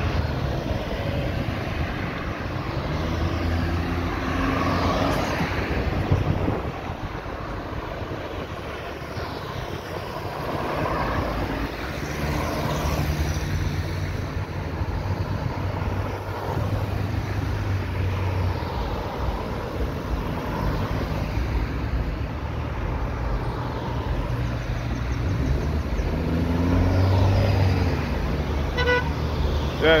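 Road traffic going round a roundabout close by: cars, a pickup truck and an SUV passing one after another, engines and tyres on the road, over a steady low engine hum.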